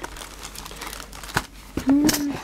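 Plastic zip-lock bags and packets of embellishments crinkling as a hand shuffles through them in a drawer, with one sharp click about a second and a half in.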